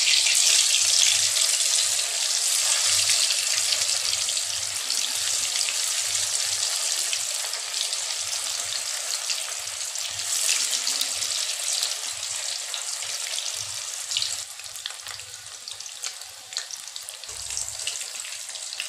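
Boiled pieces of elephant foot yam deep-frying in hot oil in a kadhai, with a dense, steady sizzle as more pieces are dropped in. The sizzle is loudest at first and eases off gradually.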